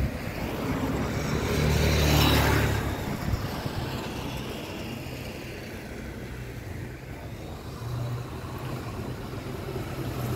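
A car passing on the street, its engine and tyre noise swelling to a peak about two seconds in and fading away, then steady street background with another engine hum near the end.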